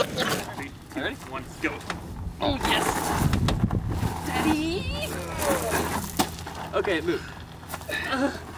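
Men's voices straining, grunting and calling out as they push a car by hand onto a trailer, with a few knocks.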